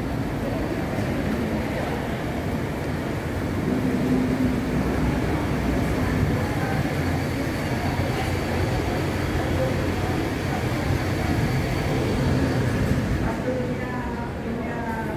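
Busy indoor concourse: a steady low rumble with voices in the background.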